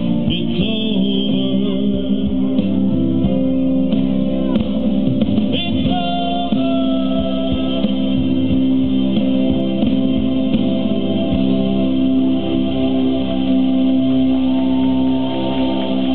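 Instrumental backing music with guitar over long held chords, with no vocal line.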